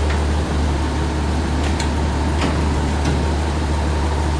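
A 1943 M8 Greyhound armoured car's Hercules six-cylinder petrol engine idling steadily, a deep even drone, with a few light clicks about halfway through.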